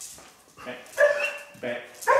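Black Labrador barking, loudest about a second in, with a second bark shortly after.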